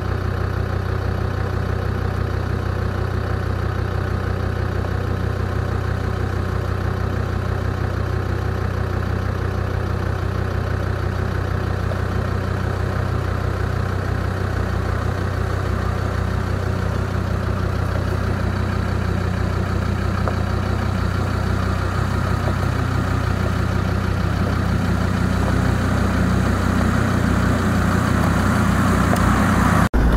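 A 4x4's engine idling steadily, growing somewhat louder over the last several seconds.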